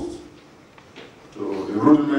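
Only speech: a man's deep voice trails off, pauses for about a second, then starts speaking again with a drawn-out vowel near the end.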